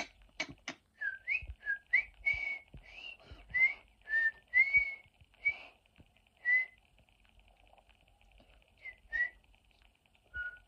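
A person whistling a quick string of short, breathy notes that slide up or down in pitch, with no steady tune. The notes stop about seven seconds in, and two more follow near the end.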